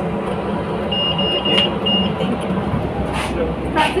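City transit bus interior with the engine and road noise as a steady rumble. A high electronic beeper sounds a quick run of short beeps about a second in, then one more beep shortly after.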